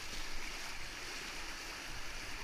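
Fast river water rushing through a rapid, a steady churning rush heard close from a kayak at water level.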